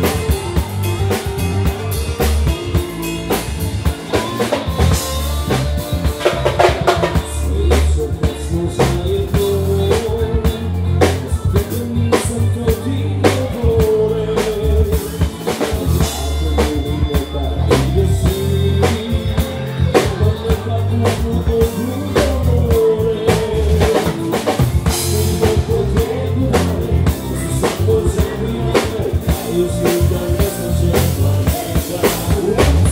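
Live band playing amplified music: a drum kit keeping a steady beat under bass and electric guitars, with a bending melody line running over them.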